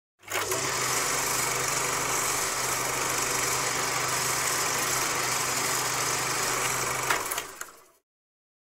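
Steady static hiss with a low hum underneath, a TV-static glitch sound effect. It starts abruptly, has a click near the start and a sharper click about seven seconds in, then fades out.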